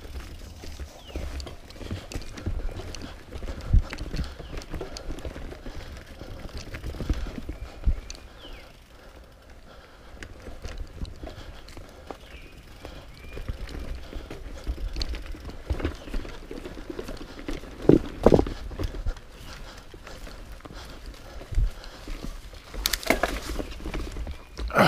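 Mountain bike running down a bumpy dirt-and-leaf forest trail: tyre noise and a constant rattle of the bike over roots and rocks, broken by several sharper knocks, the loudest a pair about two-thirds of the way through and another near the end.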